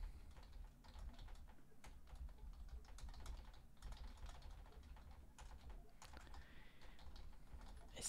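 Faint typing on a computer keyboard: light, irregular key clicks.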